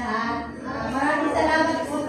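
A woman's voice, amplified through a handheld microphone, talking or half-singing with some long held notes.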